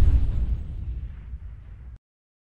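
Low rumble from an explosion sound effect, fading steadily and cutting off at the end.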